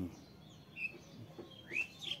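Small bird chirping: a brief high chirp about a second in and a louder rising chirp near the end.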